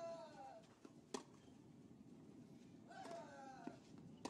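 A tennis ball is struck by a racket about a second in, a single sharp crack during a clay-court rally. Around it come two drawn-out cries with wavering, falling pitch, one at the start and one about three seconds in, from an unseen source.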